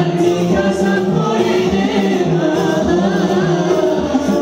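A group of men singing together into microphones, amplified through a sound system.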